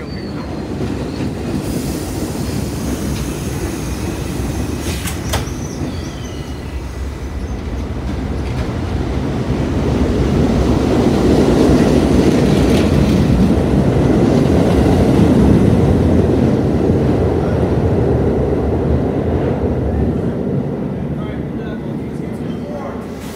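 Westinghouse R68 subway train running past along a station platform, wheels rumbling and clacking on the rails. The rumble builds, is loudest in the middle and fades away, with a brief wheel squeal and clicks early on.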